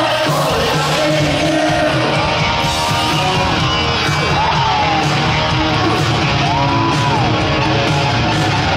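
Rock band playing live: electric guitars and drums with a woman singing lead.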